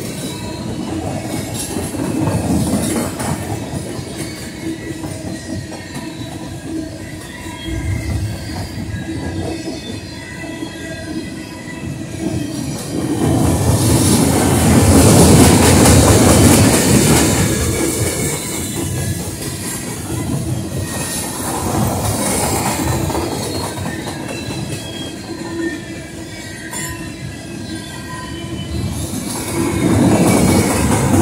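Freight train of steel gondola cars rolling past, wheels clattering over the rail joints with a faint thin squeal from the wheels. It grows loudest about halfway through.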